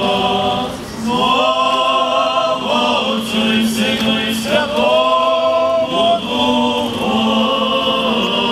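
Male Orthodox clergy chanting a liturgical prayer together: long held notes sung in phrases, with short breaks between them.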